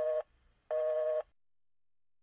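Phone busy tone after the other party hangs up: a steady two-note low tone beeping on and off about every half second, twice, then stopping just past a second in.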